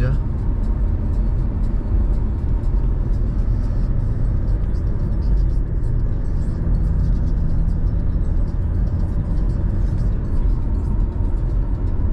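Cabin noise inside a 2005 Honda CR-V on the move: a steady low rumble of tyres on the road mixed with its 2.0-litre 16-valve petrol four-cylinder engine running at an even cruising speed.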